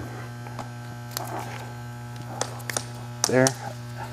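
Steady electrical hum, with a few light clicks of metal fittings as a push rod is coupled onto the air feed line of a pipe-lining packer.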